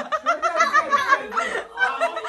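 A group of young people laughing and snickering together, several voices overlapping, with some talk mixed in.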